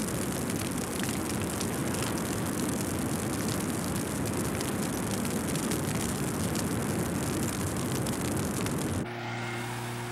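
Continuous rushing, rumbling noise with scattered crackles, heard at sea by a burning fishing boat. About nine seconds in, it cuts to the quieter, steady hum of a small boat's engine.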